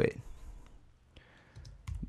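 Computer keyboard typing: a handful of light key clicks in the second half.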